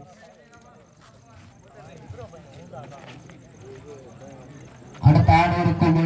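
Faint chatter of several voices at the edge of the court. About five seconds in, a man's voice comes in suddenly, loud and close.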